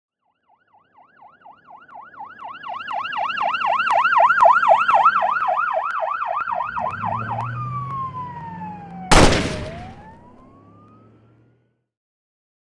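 An emergency-vehicle siren in a fast yelp, about four sweeps a second, growing louder, then sliding down in pitch in one long fall over a low rumble. A sudden loud burst of noise hits about nine seconds in and fades away over the next two seconds.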